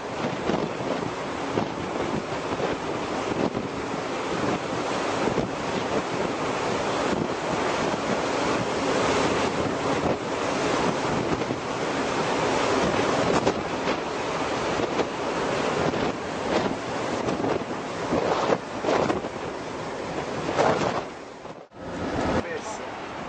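Wind on the microphone: a continuous rushing noise that swells now and then.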